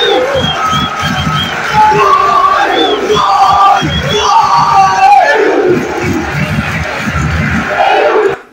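Football stadium crowd cheering and chanting loudly in celebration of a Peru win, with a fan shouting close to the phone's microphone.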